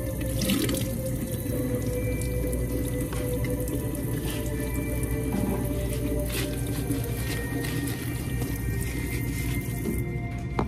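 Water running steadily from a sink faucet into the basin.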